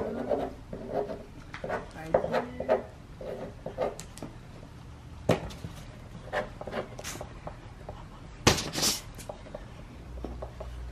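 Marker pen drawing on paper laid on a table: irregular short scratchy strokes and small taps, with a louder, longer rasp about a second before the end.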